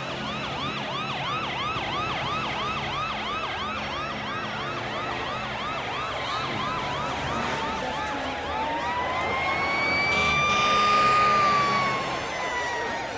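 Emergency vehicle siren in yelp mode, sweeping up and down about three times a second. About halfway through it changes to a slow wail that dips and climbs, getting louder near the end.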